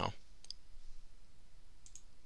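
Two faint computer mouse clicks, about half a second in and again near the end.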